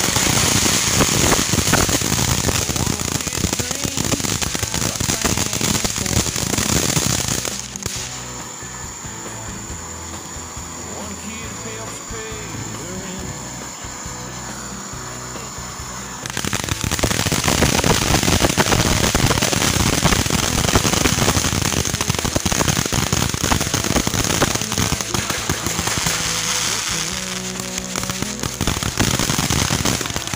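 Consumer ground fireworks going off in dense, rapid crackling, with a quieter lull of about nine seconds in the middle before the crackling starts again.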